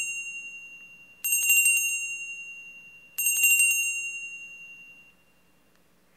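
Altar bells rung three times at the elevation of the consecrated host, signalling the consecration. Each ringing is a quick cluster of bright metallic strikes about two seconds after the last, and each rings on and fades. The last dies away about five seconds in.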